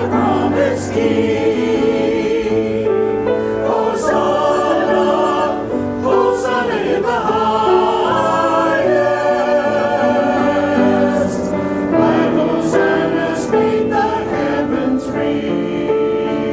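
Church choir singing an anthem, its voices holding long notes that waver in vibrato, with the hiss of 's' sounds in the words now and then.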